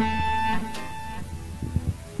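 Guitar music: a plucked chord rings out and fades away over about the first second.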